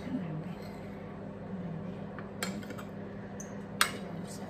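A metal spoon clinking against ceramic plates while avocado slices are served: two sharp clinks, about two and a half seconds in and, louder, near the end.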